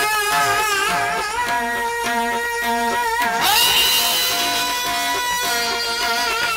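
Live qawwali music: an instrument plays a quick, repeating figure of short notes while a wavering melodic line runs above it. About three seconds in, a note slides up and is held high.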